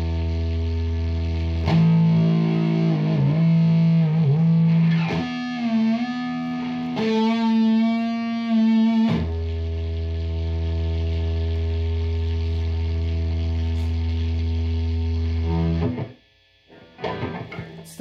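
Electric guitar played through an overdrive pedal: a held distorted chord, then bent lead notes with vibrato, then a long sustained chord that cuts off near the end. The pedal has turned noisy and its tone has changed once notes are played through it, which the owner takes for a fault.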